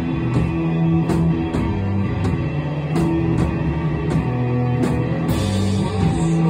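Live rock band playing an instrumental passage: electric guitars and bass hold a low, sustained riff over a drum kit, with drum and cymbal strikes about twice a second.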